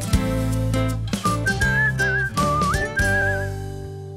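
Upbeat jingle music with plucked guitar; a whistled melody with a slight wobble comes in a little over a second in, and the music starts fading out near the end.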